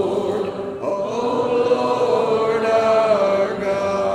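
Church congregation singing a hymn a cappella, many unaccompanied voices holding long notes and moving together from note to note.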